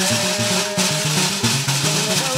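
West African harp-lute (ngoni) music: low plucked strings repeating a short pattern over steady percussion, with one sung note held through the first part.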